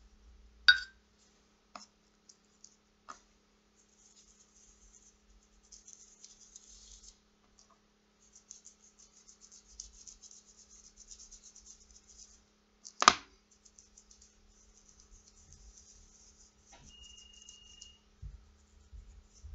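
Quiet brushing as a paintbrush spreads poster paint over the palm of a hand, with a sharp knock about a second in as a ceramic mug of water is set down on the wooden floor, and another sharp knock about 13 seconds in.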